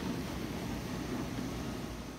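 Steady background hiss over a low hum, with no distinct events.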